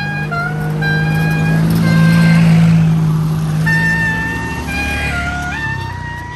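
A high melody of held notes on a small clarinet-type woodwind, mixed with a motor vehicle passing close by: a low engine hum and road noise build up, peak about halfway through, then fade.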